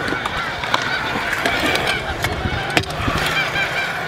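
Stunt scooter wheels rolling on a concrete skatepark bowl, with sharp clicks and knocks from the scooter. Birds call over it, a string of short calls throughout.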